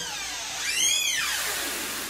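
A door's hinge squeaking as the door swings open: one whine that rises in pitch and falls back over about a second, over a steady hiss.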